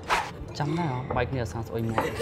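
Speech in a conversation, with a brief rasping noise right at the start.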